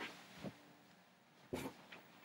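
Faint off-microphone handling noises of someone rummaging for a DVD case: a soft knock about half a second in and a louder clatter about a second and a half in, over a faint steady hum.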